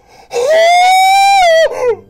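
A man's loud, high-pitched falsetto squeal of excitement, held for over a second, edging slightly upward and then dropping away at the end.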